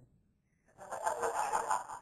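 A pause, then from a little under halfway in a person's voice for about a second, much quieter than the preacher's speech around it.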